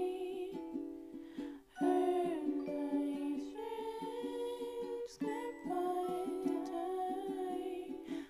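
Ukulele strummed in a quick steady rhythm, with soft singing carrying a melody over the chords. The strumming breaks off briefly just before two seconds in and again about five seconds in.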